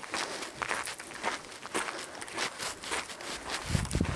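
Footsteps on a gravel path, walking at roughly two steps a second, with a low thump near the end.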